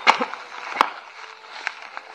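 Plastic bubble wrap crinkling and crackling as a wrapped parcel is handled and pulled out of a cardboard box, with sharp snaps near the start and again just under a second in.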